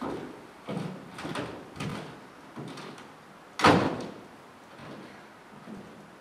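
Several footsteps and knocks on a wooden stage, then a stage-set door shutting with a bang about three and a half seconds in, the loudest sound.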